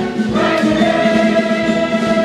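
A large ensemble cast singing together in full chorus, with a move to a new held chord about a third of a second in.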